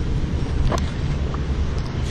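Wind buffeting the camera microphone as a steady low rumble, with a few faint ticks.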